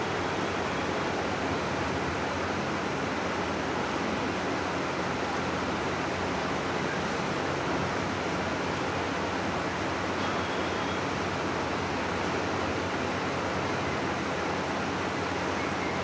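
Steady background noise of a large hall with no speech: an even hiss over a faint low hum.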